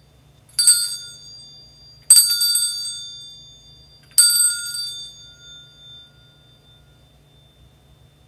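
Altar bells rung three times, each ring sharp at the start and fading over a second or two, the last ringing longest: the bells that mark the elevation of the consecrated host at Mass.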